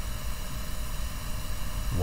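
Steady low hum with an even hiss over it: the background noise of a voice recording, with no speech.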